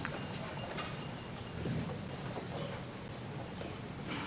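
Quiet auditorium room noise with no music playing: scattered small knocks and shuffling, with a faint murmur of people.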